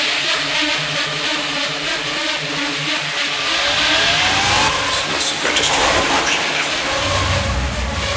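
Psychedelic trance in a breakdown: the kick drum drops out, leaving a fast pulsing synth line, with a rising synth sweep a few seconds in. Deep bass comes back near the end.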